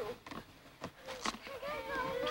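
A child's high-pitched voice, with a few brief clicks in the first second.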